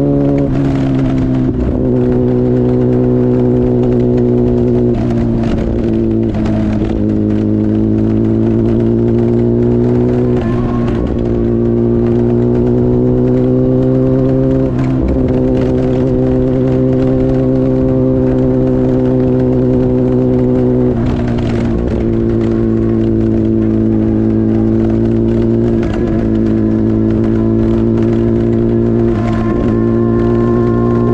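Kawasaki ZX-10R's inline-four engine running at steady road speed, its pitch drifting gently up and down, with short breaks every few seconds, over a constant low hum.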